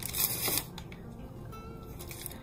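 A brief rustle of fingertips rubbing over the glued decoupage paper in the first half second, followed by faint background music.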